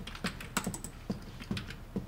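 Typing on a computer keyboard, a quick run of uneven key clicks, over a regular low thud about twice a second.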